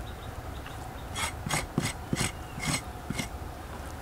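A knife blade scraping across a sheet of raw cow skin on a wooden board. There are about six quick scraping strokes, one every third of a second or so, starting about a second in.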